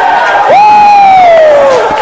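A church congregation shouting and calling out praise over one another, played back from a cassette tape. About half a second in, one voice rises above the rest with a long, high shout that slowly falls in pitch for over a second.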